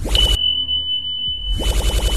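Subscribe-button animation sound effects: a short noisy swish at the start and another about a second and a half later, with a steady high electronic beep starting just after the first and held throughout.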